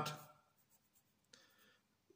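A pencil writing on paper: one faint, brief scratch a little past halfway.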